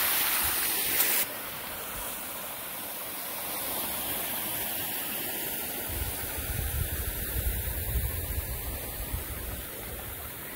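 Water from a PVC pond-draining siphon rushing out and running over leaf litter, loud for about the first second, then cutting off suddenly to a much quieter steady hiss with low rumbles in the second half.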